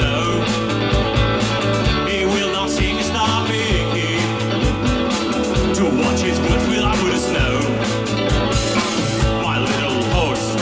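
A rock band playing live: electric guitar, bass guitar and drum kit, with a steady drum beat under sustained bass notes.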